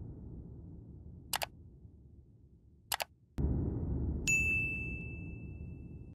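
Subscribe-button animation sound effects. A low rumbling boom fades out, followed by a single mouse click and then a quick double click. A new low boom starts, and a notification-bell ding rings on for about two seconds.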